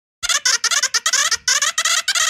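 A cartoon character's voice made of high-pitched, squeaky gibberish: a quick string of short syllables, about six a second, starting a moment in.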